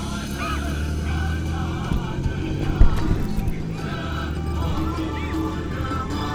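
A pack of racing camels running past on a sand track, with a steady low engine rumble from the vehicles following the race. A few short, high calls rise and fall over it.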